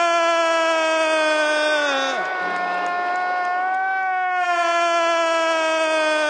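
A man's long, drawn-out announcer's call of the boxer's name, held on one high note. It slides down and breaks off about two seconds in, then is held again from about four seconds.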